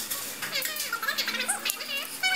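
Background music carrying a high, child-like voice that glides up and down in pitch.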